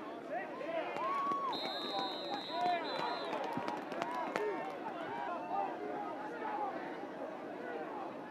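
Football crowd shouting and cheering, many voices at once, with a referee's whistle blown for about two seconds partway through as the tackle ends the play.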